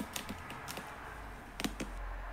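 A few light, irregular clicks and taps, about half a dozen in two seconds, from a hard plastic surface being handled.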